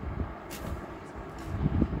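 Handling noise of a sequinned georgette saree being swept and spread over a cloth-covered surface: a short swish about half a second in and low thumps near the end, over a steady low rumble.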